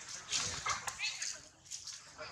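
A macaque calling in a few short, high squeals in the first second or so, then fainter calls, with people's voices mixed in.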